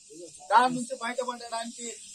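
Speech only: a man speaking into a bank of press microphones, starting about half a second in, over a steady faint hiss.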